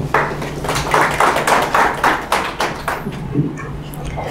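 Audience clapping: a short round of applause that dies away about three seconds in.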